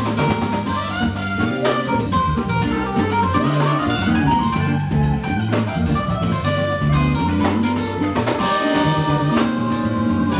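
A live band plays a jazzy R&B groove on drum kit, electric bass and keyboard, with a saxophone in the band.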